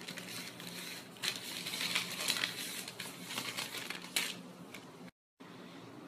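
Parcel packaging crinkling and rustling as it is torn and pulled open by hand, with irregular crackles; it cuts off suddenly about five seconds in.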